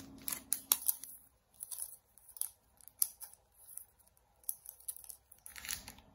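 Plastic wrapping on banknote bundles crinkling as they are handled, in short irregular crackles and clicks, with a louder burst near the end.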